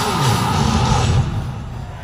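Heavy metal band playing live through a concert PA: loud distorted guitars, bass and drums with a downward pitch slide, the song ending a little over a second in. What follows is a fainter wash of crowd noise.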